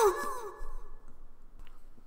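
A high voice crying out in the distance, falling in pitch and trailing off in an echo, a cry of distress from someone in trouble.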